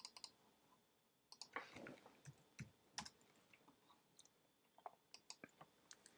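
Faint, scattered clicks of a computer mouse and keyboard, a few at a time, over near-silent room tone.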